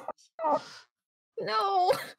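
Anime dialogue: a girl's short, breathy "huh?" about half a second in, then a high-pitched girl's voice speaking a short line near the end.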